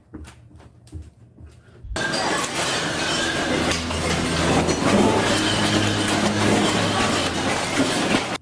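A few faint knocks, then about two seconds in a sudden loud rattling and clinking of supermarket shelves and stock, with a low rumble beneath, as the store shakes in an earthquake; it cuts off abruptly near the end.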